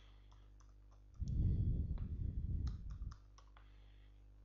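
Computer keyboard typing: irregular key clicks as code is typed. From about a second in, a louder low rumble lasts about two seconds under the clicks.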